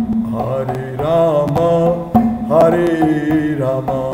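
A man singing a Hindi devotional bhajan in two long, gliding melodic phrases, over a steady low instrumental drone and regular percussion clicks.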